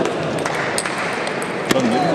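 Table tennis ball clicking off bats and table in a short rally: a few sharp ticks, the loudest one shortly before the end.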